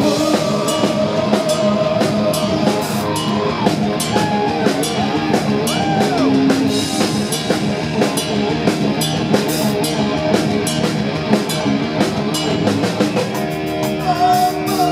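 Progressive metal band playing live through a club PA: a loud drum kit with frequent cymbal hits, distorted electric guitars and bass guitar.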